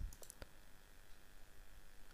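A couple of faint, short computer mouse clicks over quiet room hiss, as a payment option is selected on a web page.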